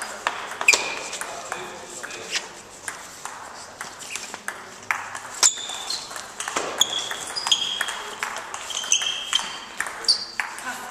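Table tennis balls clicking off bats and tables in quick, irregular hits, some with a short high ringing ping, with more play going on at nearby tables in a large hall.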